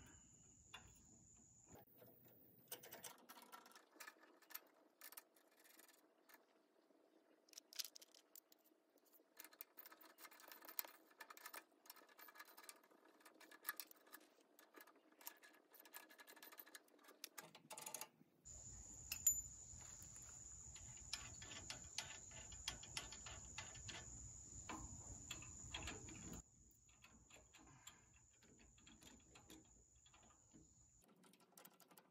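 Faint, scattered clicks and small metal rattles of a socket ratchet and hitch chain links while the bolts of a compact tractor's three-point hitch are fitted and tightened.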